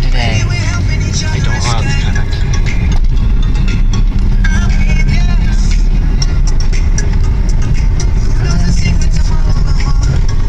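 Steady low rumble of a car driving, heard from inside the cabin, with a voice over it at times.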